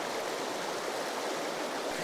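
Fast river current rushing over shallow rapids: a steady, even rush of water.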